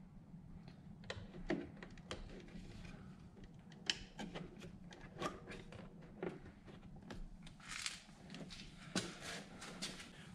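Faint, scattered small clicks and taps of fingers handling and pressing a third brake light housing into place on a car's trunk lid, over a faint low steady hum.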